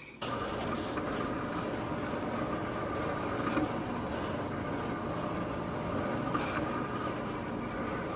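Graphtec CE7000-40 cutting plotter running steadily as its cutting head travels over a sheet of sticker paper, with faint ticks over an even motor sound.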